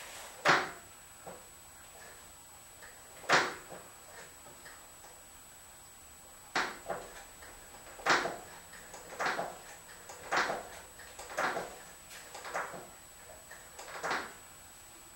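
Brake pedal of a 1967 VW Beetle being pumped during a one-man brake bleed: a series of short mechanical clunks, a few spaced out at first, then about one a second from about eight seconds in.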